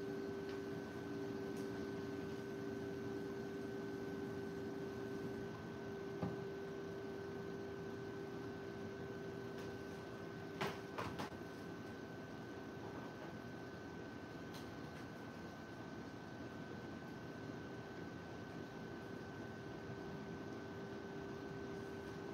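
Quiet room tone with a steady electrical hum at two constant pitches, one low and one higher. A lower part of the hum drops out about five seconds in, and a few faint clicks come around the middle.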